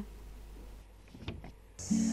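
A quiet pause with a few faint clicks. Near the end an acoustic guitar and a man's singing voice come in.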